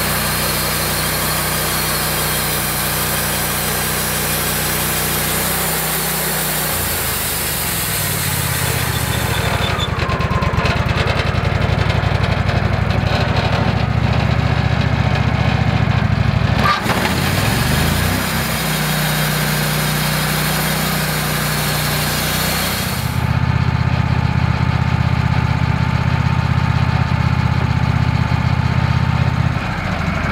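Wood-Mizer LX150 portable band sawmill running, its engine humming under the hiss of the band blade sawing through a log. The hiss stops about ten seconds in while the engine note shifts, returns for several seconds, then stops again, leaving the engine running steadily.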